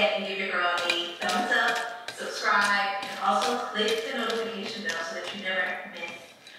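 Background music: a song with a singing voice.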